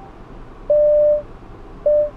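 The car's parking-assist warning chime: one steady electronic beep of about half a second, with another beginning near the end. It is the system's signal to stop the reverse move and shift to drive.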